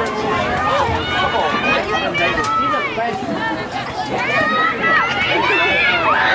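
Many high voices shouting and calling over one another at a soccer match, with no clear words: players and spectators yelling during open play.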